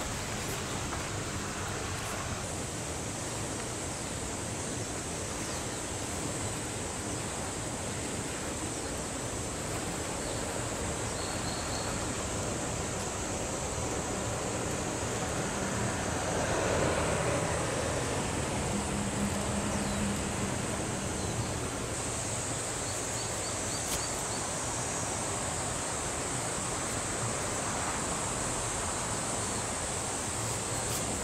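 Steady rushing outdoor background noise with a thin high hiss above it, swelling briefly about halfway through.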